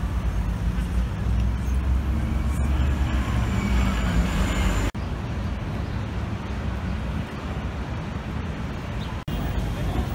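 City street ambience: road traffic running past with a steady low rumble, and voices of people on the sidewalk. The sound breaks off sharply twice, about halfway and near the end, at edits between street scenes.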